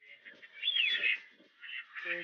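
Birds calling and chirping in high, quick notes, with one clear falling call about halfway through.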